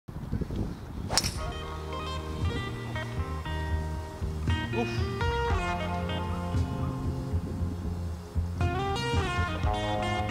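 Guitar-led background music throughout. About a second in, a single sharp crack of a driver striking a golf ball off the tee.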